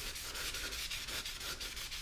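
A towel wet with brake cleaner rubbing back and forth across the face of a new slotted brake rotor, in quick, even strokes.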